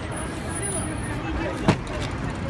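Busy street background of traffic and people talking, with one sharp knock near the end as a metal aerosol spray-paint can is set down on the table.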